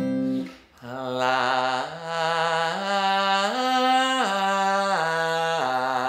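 A man's singing voice demonstrating a simple triad scale: sustained notes stepping up four notes and back down again, each held for about a second, with acoustic guitar accompaniment. It is a pitch exercise, each note sung by coming in from behind it and dropping down onto it rather than scooping up.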